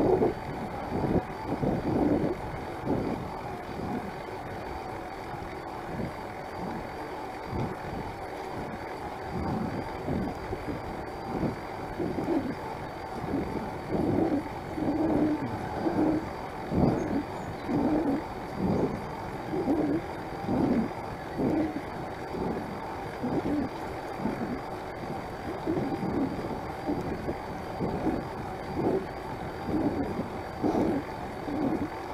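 Wind rushing over the microphone of a moving electric-assist bicycle, with short pulses about once a second and a faint steady high tone.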